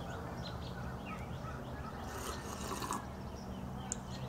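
Small birds chirping over and over in short notes above a low steady hum, with a brief rustle about two seconds in.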